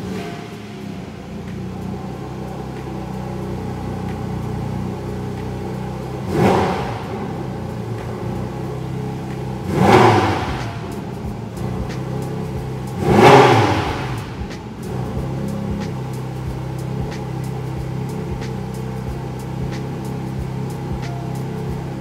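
Porsche 718 Cayman GT4 RS's naturally aspirated 4-litre flat-six idling steadily, blipped three times, about 6.5, 10 and 13.5 seconds in, each rev rising sharply and falling back to idle.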